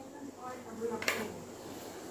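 Light click of plastic toy food knocking against a toy piece or tabletop about halfway through, with faint murmuring from a small child.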